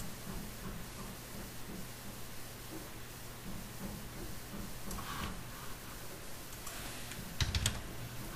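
A few quick computer clicks in a tight cluster near the end, over a steady low hum.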